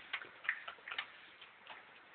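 A few faint, short clicks and ticks at irregular intervals, about half a dozen, from small objects being handled.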